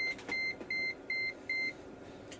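Digital multimeter beeping: five short, high, identical beeps in an even rhythm, a little under three a second, then stopping.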